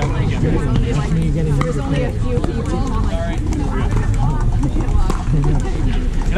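Overlapping chatter of pickleball players and onlookers, with the sharp pops of paddles striking the ball a few times, over a steady rumble of wind on the microphone.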